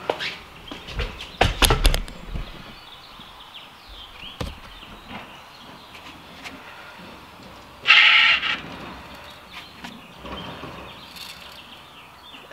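A bicycle front wheel with a Formula hub spinning by hand in a truing stand, with a few knocks from the wheel and stand in the first two seconds. About eight seconds in there is one short, loud, high-pitched squeak.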